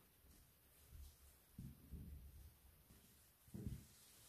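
Near silence with a few faint, dull thuds of soft dough being folded and pressed onto a floured stainless steel counter; the firmest comes about three and a half seconds in.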